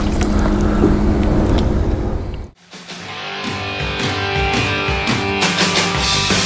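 A hooked bass splashing at the water surface over a steady low hum, cut off sharply about two and a half seconds in. Then rock music with electric guitar starts.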